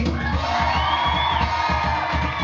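Live band playing a steady groove with a regular beat, while the audience cheers and whoops for a band member who has just been introduced.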